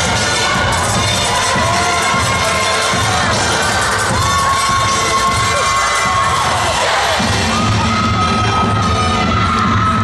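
Dance-routine music playing loud over the gym's sound system, with a crowd cheering and shouting over it. The music's low end gets heavier about seven seconds in.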